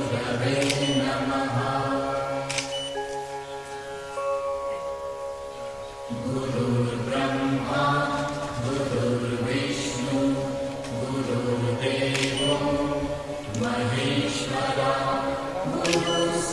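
Devotional mantra chanting playing as background music, with long held notes over a steady drone, softer for a few seconds in the middle. A few sharp clicks, spaced seconds apart, stand out over it.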